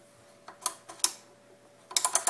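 Darkness-setting dial of an All-Clad Belgian waffle maker being turned through its settings, giving about five light, unevenly spaced clicks.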